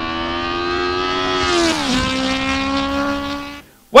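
A racing car engine passing at speed, used as a transition sound effect. Its high steady note drops sharply in pitch about two seconds in as the car goes by, then fades and stops shortly before the end.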